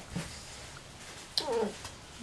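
A pet's single short cry, falling in pitch, about a second and a half in, as it begs for food.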